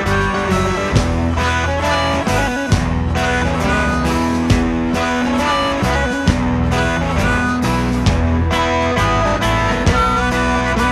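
Blues played by a band: guitar notes over a heavy bass line, with drum hits keeping a steady beat.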